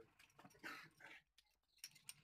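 Faint handling sounds: a short rustle, then a couple of light clicks near the end as a metal bearing puller is picked up.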